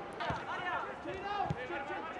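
Players' voices shouting across a football pitch in a near-empty stadium, with two dull thuds about a second apart.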